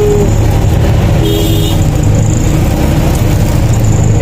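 Motor rickshaw engine running under way, heard from inside the open passenger cab as a loud, steady low rumble with road noise.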